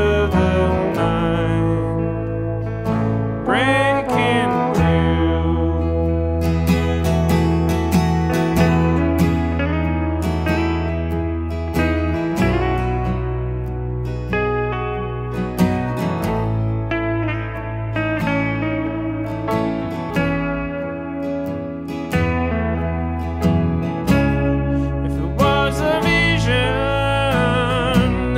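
Instrumental passage of a country-folk song: guitars over steady held bass notes, with gliding, bending notes near the start.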